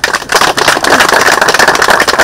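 Audience applauding: dense, rapid clapping that starts suddenly and loudly.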